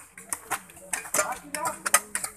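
Metal hoe blade chopping into hard, stony ground: a string of irregular sharp chinks and scrapes, with voices of people nearby.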